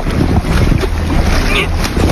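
Swimming-pool water sloshing and splashing around an inflatable float, with a heavy wind rumble on the microphone.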